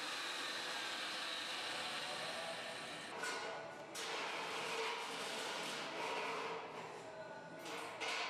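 Steady, fairly quiet whirr of a Ridgid 300 power-drive pipe threading machine running. The sound shifts briefly about three to four seconds in.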